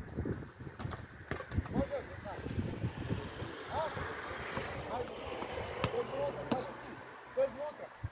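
Indistinct voices of footballers and spectators calling out during a match, with no clear words. The short calls grow more frequent in the second half.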